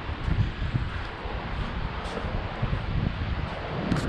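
Wind buffeting the microphone: an uneven low rumble in gusts over a faint hiss.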